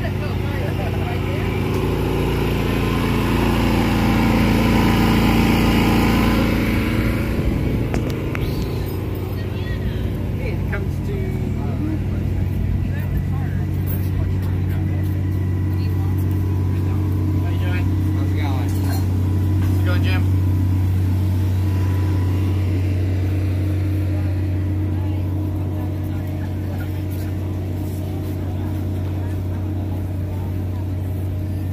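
Steady low hum of a running engine, with people talking in the background.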